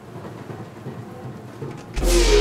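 Steady rain with a low thunder rumble, a hissing wash of noise at moderate level; a loud beat cuts in right at the very end.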